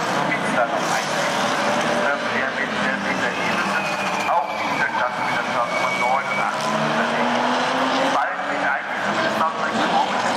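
Historic race cars passing on the circuit, their engines running at speed; one engine rises in pitch about seven to eight seconds in. People are talking throughout.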